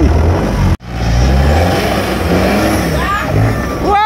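Off-road competition buggy's engine running hard under load as it claws through deep mud, its speed rising and falling. The sound breaks off abruptly for an instant about a second in.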